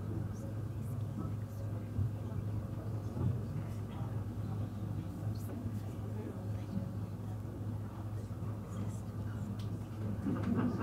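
Room tone: a steady low hum with faint background voices and a few small knocks and ticks.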